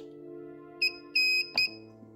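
Mini battery spot welder in auto mode beeping three times, short, long, short, as its leads touch the nickel strip on a cell, with a sharp snap of a weld near the end. Steady background music underneath.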